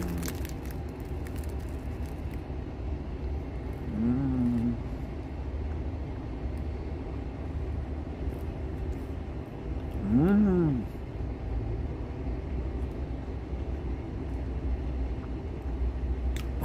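A man eating a sandwich from a paper bag: paper crinkling at the start, then two appreciative "hmm" sounds, a short one about four seconds in and a louder one about ten seconds in, over a steady low rumble.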